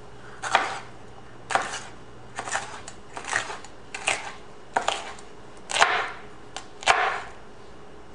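Kitchen knife slicing a red bell pepper into strips on a cutting board: about eight separate cuts, roughly one a second, each a short crunch of the blade through the pepper onto the board.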